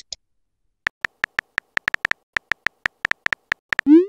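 Simulated phone-keyboard typing sounds from a texting-story app: a run of short, quick clicks, about five a second, as a message is typed, ending in a brief rising whoosh as it is sent.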